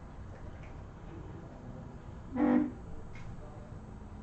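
A single short horn-like tone, about half a second long, about two and a half seconds in, over faint room noise with a couple of light clicks.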